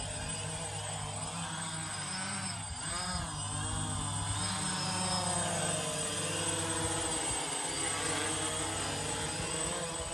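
Quadcopter drone with a DJI Phantom 1 body flying overhead: the steady multi-toned hum and whine of its four motors and propellers. The pitch dips and rises again about three seconds in as the motor speeds change in a manoeuvre, and the sound grows a little louder in the second half as the drone comes closer.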